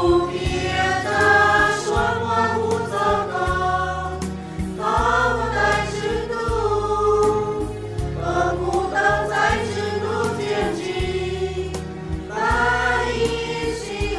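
A choir singing a Christian song over instrumental backing with sustained bass notes, in phrases of a few seconds each.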